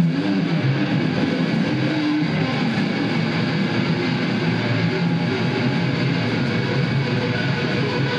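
A rock band playing live, with electric guitar to the fore over a dense, steady wall of sound.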